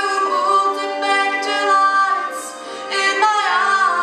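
A woman singing solo, holding long notes with vibrato and gliding between pitches.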